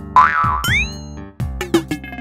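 Children's cartoon background music with springy cartoon sound effects laid over it: a quick rising swoop a little after the start, another about half a second later, and falling swoops near the end.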